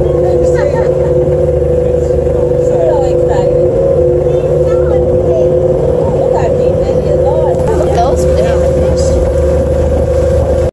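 Glass-bottom boat's motor running at a steady speed, a constant loud drone and hum with low rumble underneath, with faint voices over it.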